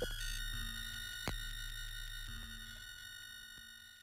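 Electronic music winding down: a cluster of steady, high synthesized sine tones over a low drone, with a sharp click about a second in, fading out near the end.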